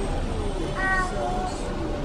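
A short, high-pitched vocal call about a second in, over steady background noise.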